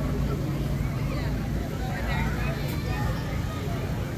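Outdoor crowd chatter, with scattered voices, over a steady low mechanical hum.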